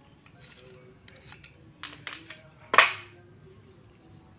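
Handling noise from a coax cable and metal F connector being fitted together by hand: a few short, sharp clicks and scrapes about two seconds in, the last, just before three seconds, the loudest.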